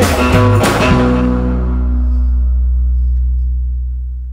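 The close of a rockabilly band recording: guitar and bass playing into a final chord about a second in, whose low notes ring on and slowly fade out.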